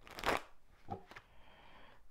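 A deck of tarot cards being shuffled by hand: one brief rush of cards sliding together just after the start, then a couple of light taps.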